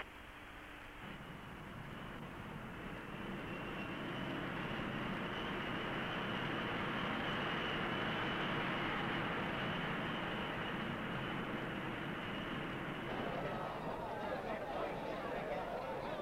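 Outdoor crowd ambience: a steady rushing noise that swells over the first several seconds, with indistinct voices of many people, more noticeable near the end.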